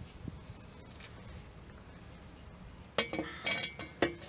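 Stainless steel exhaust Y-pipe clinking and ringing as it is put down on concrete: a short run of sharp metallic clinks about three seconds in, after a quiet stretch with a few faint small knocks.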